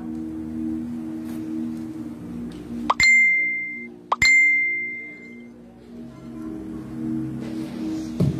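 Soft held keyboard chords of church background music, broken about three seconds in by two loud, bright ringing dings about a second apart, each sweeping up sharply and then ringing out for about a second.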